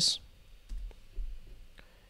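A few faint, scattered clicks of computer keys as a new folder name is entered in a code editor.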